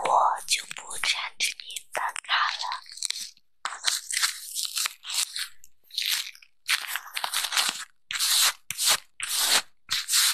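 Crinkling and crunching of a small printed wrapper handled in the fingers, in irregular bursts of a fraction of a second with short pauses between them.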